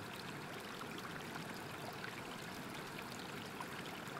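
Faint, steady rush of running stream water, an even wash of sound with no distinct events.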